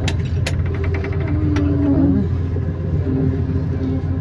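Steady low rumble of engine and road noise from a moving vehicle, with a few sharp clicks in the first couple of seconds.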